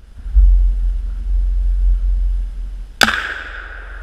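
A single .338 Winchester Magnum rifle shot about three seconds in, striking a steel drum bullet trap filled with crumb rubber. It is a sharp crack followed by a ringing that fades over about a second and a half, over a steady low rumble.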